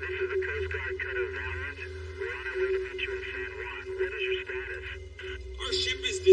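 A thin, radio-filtered voice talking over a handheld two-way radio, over a steady low hum.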